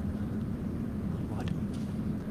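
A steady low hum of room noise, with brief faint, indistinct speech about one and a half seconds in.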